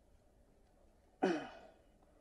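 A man at a microphone lets out one short sigh with a falling pitch just over a second in; otherwise only faint room tone.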